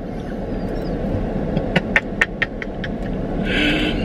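Steady rumble of a car's engine and air conditioning heard inside the cabin, with a quick run of sharp clicks about halfway through and a short hiss near the end.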